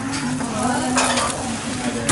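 Chopsticks stirring and tossing noodles in a bowl, with a few light clinks over a steady hiss.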